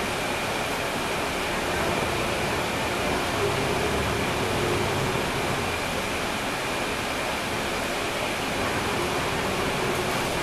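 Steady cabin noise inside a moving 2012 NABI 416.15 (40-SFW) transit bus, heard from near the rear. Its Cummins ISL9 diesel engine drones low under an even hiss of road and air noise, with a faint steady high whine.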